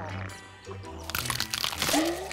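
Cartoon sound effect of an eggshell cracking and shattering: a dense burst of crunching cracks starting about a second in, over background music.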